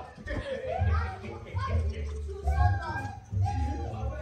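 A small child's high voice babbling and calling out in short phrases, over a low rumble.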